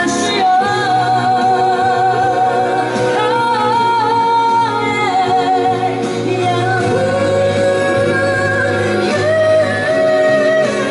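A woman singing a song live into a handheld microphone over instrumental accompaniment, holding long notes with vibrato.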